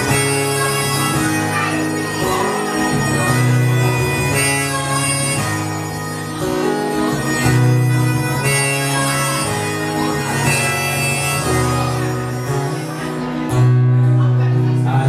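Instrumental opening of an acoustic song: a harmonica in a neck rack playing held chords over a strummed acoustic guitar, the chords changing every second or two.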